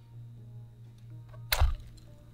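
A single sharp click with a low thump about one and a half seconds in, from a bayonet and its hard scabbard being handled, over a low steady hum.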